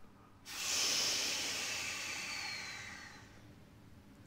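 Suspended cymbal struck about half a second in, its hissing shimmer fading away over about three seconds.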